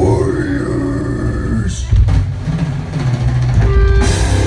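Death metal band playing live on an outdoor stage: a drawn-out shouted vocal, then about two seconds in the full band comes in loud with heavy distorted guitars, bass and drums.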